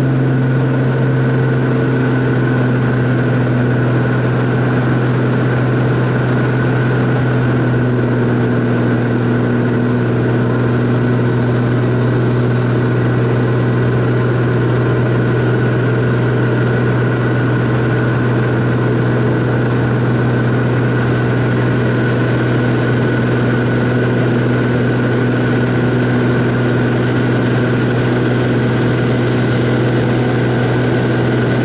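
Floatplane's piston engine and propeller running at a steady, loud drone as the plane lifts off the water and climbs.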